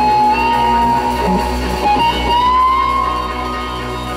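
Live rock band with an electric guitar lead holding a high sustained note, which it bends slightly upward about two seconds in, over a steady band backing.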